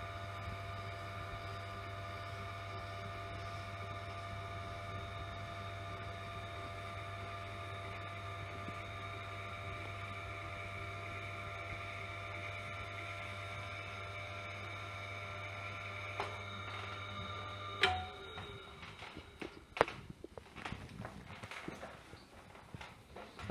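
Tormek sharpener's electric motor running with a steady, even hum while its leather honing wheel turns, then switched off, the hum cutting out abruptly about 18 seconds in. A few clicks and knocks of handling follow near the end.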